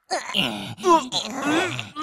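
Cartoon character voices: a run of short vocal sounds with bending pitch, groan- and grunt-like rather than clear words.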